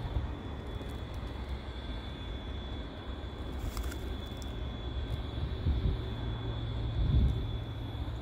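Low, steady rumble of an approaching CSX freight train led by a GE ES44AH diesel locomotive, still far off, with a couple of louder low swells near the end.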